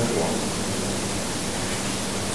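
Steady hiss of room and microphone background noise, with a faint low hum, in a gap between spoken sentences.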